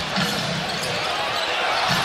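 Basketball arena crowd noise: a steady din of a large crowd cheering and calling out in a big hall.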